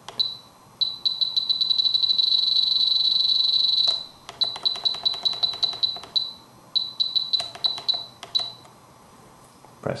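Spektrum DX7se radio transmitter beeping at each step as its increase/decrease rocker scrolls through name characters. There is one short beep, then a fast run of beeps that blurs into an almost continuous high tone for about three seconds while the key is held, then shorter groups of beeps.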